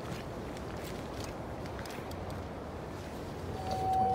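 Footsteps on a hard lobby floor over a steady background hum, with faint scattered ticks. A steady high tone comes in near the end.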